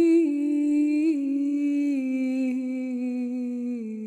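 A single voice singing wordlessly in long held notes, a slow line that steps down in pitch, wavering slightly near the end.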